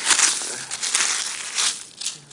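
Loose pea gravel scraped and pushed aside by hand: a rough, continuous grating with many small clicks of stone on stone.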